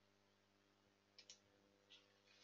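Near silence with a faint steady hum; about a second in come two faint computer mouse clicks close together, and another near the end.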